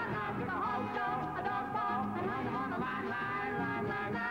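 A man and a woman singing a 1960s rock-and-roll pop song together, backed by a live band.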